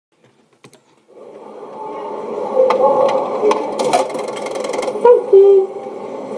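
Muffled recorded audio played through a small speaker. It fades up after a couple of faint clicks and is broken by a few sharp ticks.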